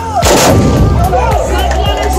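A tbourida volley: a line of horsemen's muzzle-loading black-powder muskets (moukahla) fired together as one loud blast about a quarter second in, with a rumbling tail that dies away.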